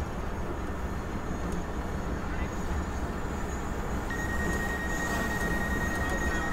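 Pickup truck driving along a road, a steady low rumble of engine and road noise heard from the open truck bed. About four seconds in, a steady high-pitched alarm tone starts: the DJI Mavic Pro's object-detection warning.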